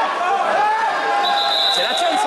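Several voices calling out at once in a large, echoing sports hall around a grappling bout, with a steady high-pitched tone starting about a second and a quarter in and held to the end.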